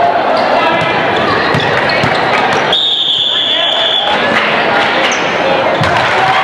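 Crowd chatter and game noise in a gymnasium during a basketball game. Midway through, a referee's whistle sounds in one steady, high blast of just over a second, and the crowd noise dips under it.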